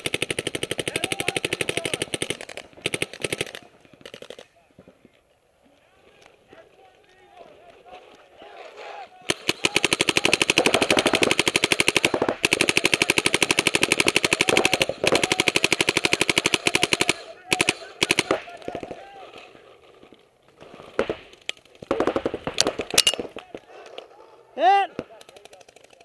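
Paintball markers firing rapid streams of shots in a close exchange of fire. There is a burst over the first few seconds, then a long unbroken stream from about nine to seventeen seconds in, then shorter bursts near the end.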